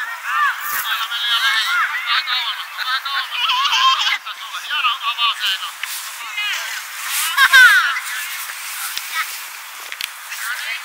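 Several children's high voices shouting and calling over one another. The sound is thin, with everything below the upper midrange cut away. A sharp knock comes about seven and a half seconds in.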